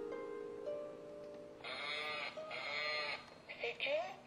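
Plucked harp notes ringing and fading, then a warbling, bleat-like toy sound effect from about a second and a half in: two long wavering bursts, then a few short ones near the end.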